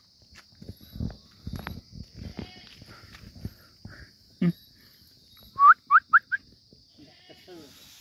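A goat bleating briefly, with rustling and footfalls in the grass and a steady high insect buzz behind. The loudest sounds are four quick rising chirps a little after the middle.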